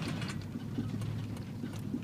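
Car interior noise while driving slowly: a steady low engine and road rumble with scattered light knocks and rattles, as on a rough road.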